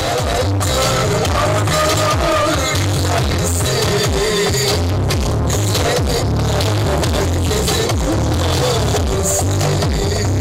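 Loud dance music played over loudspeakers, with a heavy pulsing bass beat and a wavering melodic lead line.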